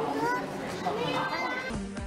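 Children's voices talking and exclaiming, high-pitched and lively. Near the end they cut off abruptly and music starts.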